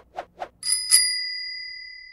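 Bicycle bell rung twice, a quick double ding whose ringing fades away over about a second. A few light, evenly spaced ticks, about four a second, come just before it.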